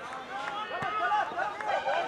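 Several voices talking and calling out at once at an outdoor football match, overlapping so that no words stand out.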